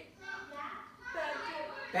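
A girl's voice, speaking and vocalising in short, unclear bits of speech.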